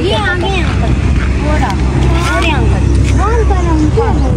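Voices talking, not clearly spoken toward the camera, over a steady low rumble.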